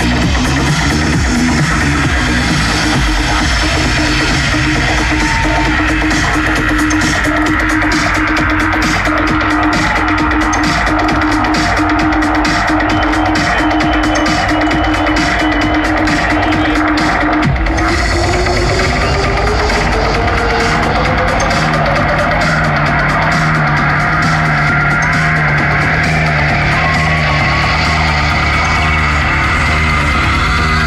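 Loud live electronic music with a dense steady beat. A held mid-low tone sustains through the first half, then glides upward in pitch from about halfway through, and a new pulsing bass pattern comes in over the last part.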